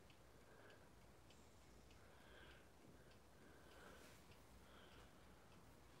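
Faint, steady ticking of a twin-bell analog alarm clock.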